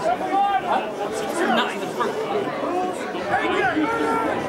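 Several people's voices talking and calling out over one another, indistinct and overlapping.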